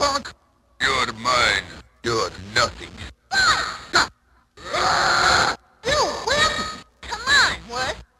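A run of short vocal samples from a turntablist battle record, about nine separate bursts with brief silent gaps between them. The voice slides up and down in pitch within each burst, with no words clear enough to be transcribed.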